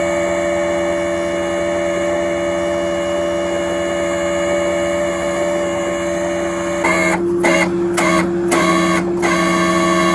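Tow truck's engine and winch running with a steady drone of several held tones while the car is winched up the snowy embankment. From about seven seconds in, a few short scuffs of handling noise break over it.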